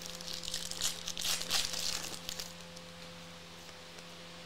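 Foil wrapper of a trading-card pack being torn open and crinkled by hand for about the first two and a half seconds, then dying away.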